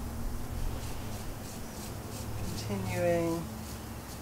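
Marker pen scratching and rubbing along a wire of hardware cloth as the wire is coloured in, faint over a steady low hum.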